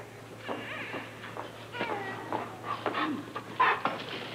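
A large dog whining and whimpering in short cries that rise and fall in pitch, getting louder toward the end.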